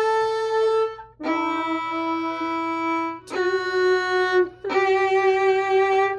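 Violin played slowly with the bow: long sustained single notes, about four in turn, each held for one to two seconds with a brief break between notes.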